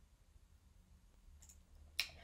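Near silence with a faint low hum, then a small click about one and a half seconds in and a sharp computer mouse click at the very end.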